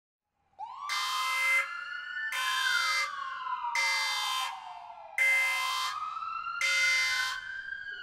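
A wailing siren, its pitch rising and falling slowly, starting about half a second in. Short, buzzing blasts sound over it about every second and a half, five times.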